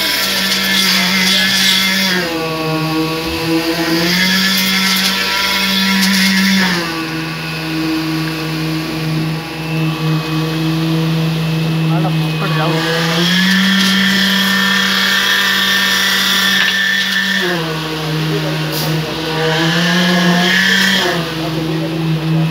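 Concrete-pouring machinery running with a steady hum whose pitch steps down and back up every few seconds.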